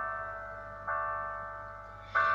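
Piano chords ringing out and fading: one decaying at the start, then a new chord struck just under a second in and left to die away.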